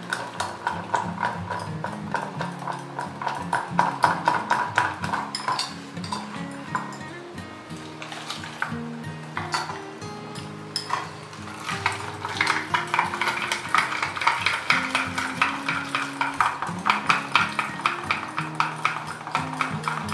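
A wire whisk beating fresh cream in a glass bowl, its wires clinking against the glass in quick repeated strokes. Instrumental background music plays over it.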